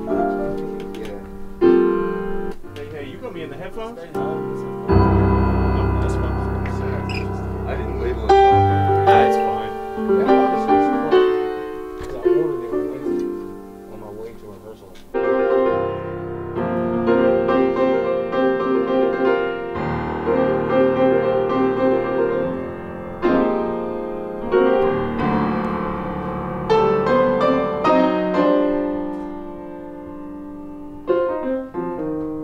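Piano being played: chords and short phrases, each struck with a sharp attack and then dying away. About halfway the sound abruptly turns duller.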